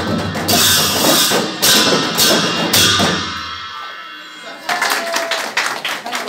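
Newar dhime drums and hand cymbals playing a loud beat with repeated cymbal crashes. The playing stops a little past halfway and the cymbal ring dies away, then voices and chatter come in near the end.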